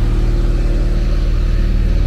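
Large box lorry's diesel engine idling close by: a steady, low, evenly pulsing rumble that does not change.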